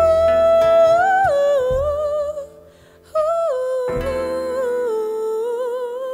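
A woman's voice singing long, wordless held notes with vibrato over a soft band accompaniment. A first note steps up and then down, the voice breaks off briefly about halfway, then returns high and slides down to a lower note that it holds to the end.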